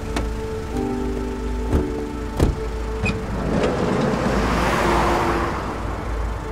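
A car driving past on a wet street: its tyre and engine noise swells over a couple of seconds and fades again, over sustained music notes. Two sharp knocks come earlier.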